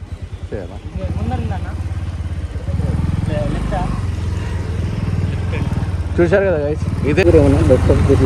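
Motorcycle engine running as the bike pulls away and rides along, its level stepping up about a second in and again near three seconds as it accelerates. Voices are heard briefly near the end.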